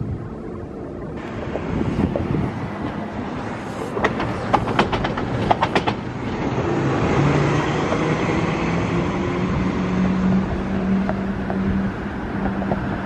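A train running on the line, with a quick run of sharp clicks about four seconds in, like wheels crossing rail joints, then a steady low hum and rumble that lasts to the end.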